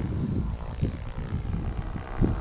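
Wind buffeting the microphone in uneven gusts, with a faint steady propeller drone underneath.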